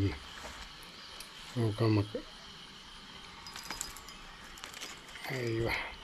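Quiet outdoor background with faint steady insect calls, broken twice by a man's short words, about two seconds in and near the end.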